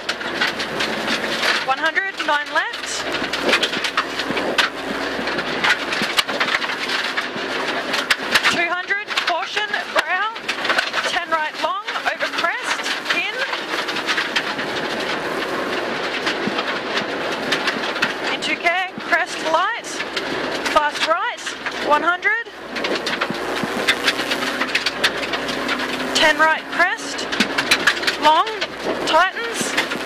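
Rally car engine heard from inside the cabin, revving hard with its pitch climbing, dropping and climbing again in quick runs through the gears, several times over. Road noise and short clicks and knocks from gravel run underneath.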